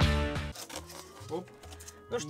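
Background music that cuts off about half a second in, followed by quiet with a brief voice-like sound partway through.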